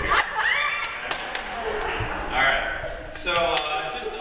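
A man speaking on stage, his voice carried over the hall's sound system; no music is being played.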